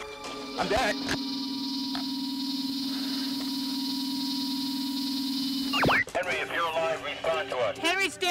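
A steady electronic drone with a slight buzz, held for about five and a half seconds, cuts off with a quick falling sweep; voices follow near the end.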